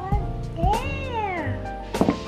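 A cat meowing once, a long call that rises and then falls in pitch, over background music.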